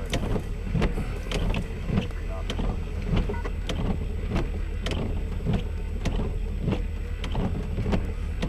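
Raindrops tapping irregularly on a vehicle's glass and roof, a couple of sharp taps a second, over a steady low hum inside the vehicle.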